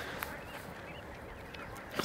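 Quiet outdoor background with a few faint, distant bird calls, short chirps in the first half.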